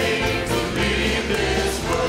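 Church praise team and choir singing a gospel worship song together, with several voices in harmony over a band's steady bass accompaniment.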